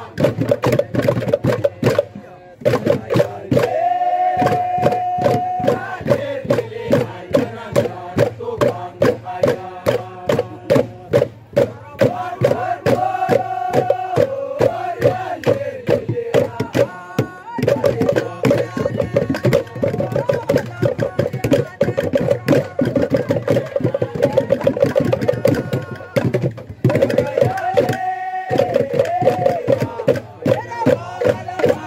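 Traditional Tolai dance music: a group chanting in unison over a fast, steady percussion beat. The voices hold long notes now and then, and the beat drops out briefly a few times.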